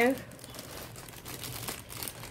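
Clear plastic poly bag crinkling as hands handle and open a packet of leggings.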